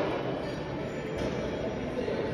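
A steady, even mechanical rumble with no distinct knocks.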